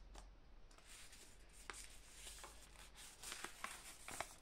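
A sheet of paper being crinkled between the fingers: faint, soft crackling with scattered small ticks, starting just under a second in.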